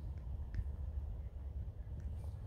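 Low, steady rumble of wind on the microphone, with a faint tick about half a second in.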